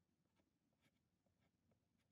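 Near silence with a few faint, short scratches of a soft pastel stick stroking over toned paper.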